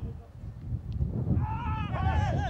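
A high-pitched voice shouting or calling out, starting about one and a half seconds in, over a low rumble like wind on the microphone.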